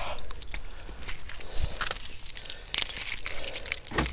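A bunch of car keys jangling and clinking in the hand, with a series of short rattles and clicks from handling.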